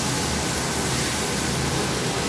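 Chicken fillets sizzling on a hot flat-top griddle: a steady hiss with a low hum underneath.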